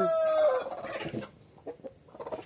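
A hen's held call, about half a second long, ending on a falling note, followed by faint scuffs and knocks.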